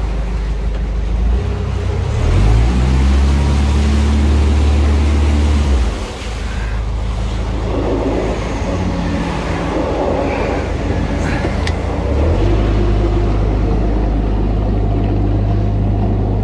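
Narrowboat's diesel engine running under way, its note stepping up about a second and a half in, dropping back around six seconds as the throttle eases, and picking up again near twelve seconds.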